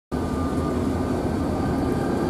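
EMD GP-series (geep) diesel locomotive running, a steady low rumble with a few faint steady tones above it.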